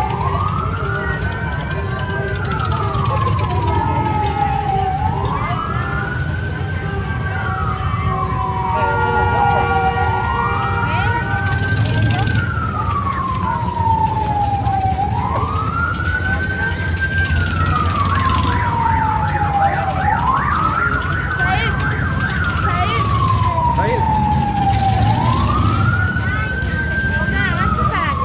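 A siren wailing in a slow, regular cycle. Its pitch climbs quickly, then falls away more slowly, about once every five seconds, with a steady low rumble beneath.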